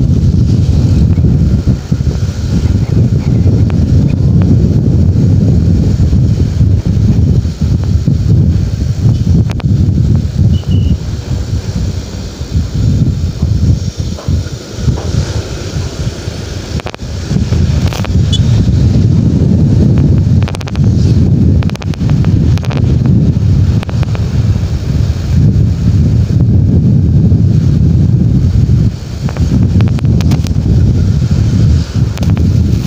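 Heavy wind buffeting the microphone of a moving motorcycle, with the old Honda CB150R's single-cylinder engine and road noise running underneath. The rumble eases for a few seconds around the middle, then comes back up.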